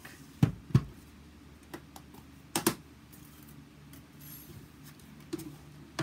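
Hard plastic knocks and clatter of a die-cutting and embossing machine and its cutting plates being set down and handled on a hard countertop: two sharp knocks close together near the start, two more about halfway through, then a few lighter taps.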